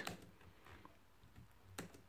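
A few faint key presses on an HP Notebook 15 laptop keyboard, the arrow and Enter keys, in near silence; the clearest click comes near the end.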